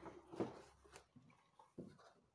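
Cardboard lid of a model-train set box being lifted off: a few faint rubs and soft knocks of cardboard.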